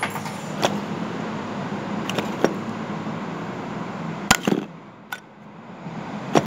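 Steady hum and noise of coin-operated game machines, with a few sharp clicks; the loudest click comes about four seconds in, after which the noise dips for about a second.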